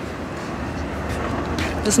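Outdoor traffic noise: a low rumble and hiss that grows slowly louder.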